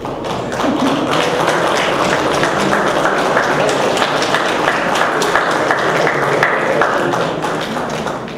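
Audience applause, children among those clapping: a dense run of rapid claps that swells about half a second in and fades near the end.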